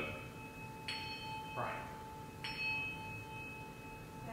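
Small brass hand bell struck twice, about a second and a half apart, each strike ringing on with a clear, steady tone. Each ding marks a person named for healing prayer.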